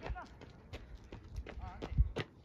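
A run of irregular sharp knocks, the loudest one at the very end, with a brief voice calling out between them.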